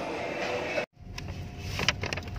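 Busy shopping-mall background murmur that cuts off abruptly just under a second in, followed by a low steady rumble with a faint steady hum and a few sharp clicks and taps.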